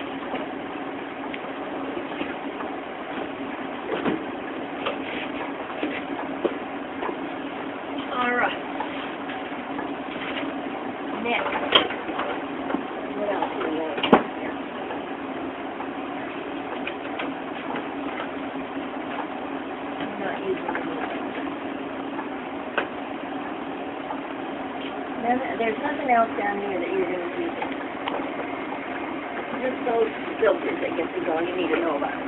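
A steady mechanical hum runs throughout, with a few sharp knocks and clicks of handling (the loudest about 14 seconds in) and brief bits of low talk.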